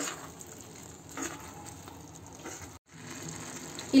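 Carrot halwa faintly sizzling in its pan as milk powder is stirred in, with a couple of soft spatula scrapes. The sound cuts out briefly just before three seconds in.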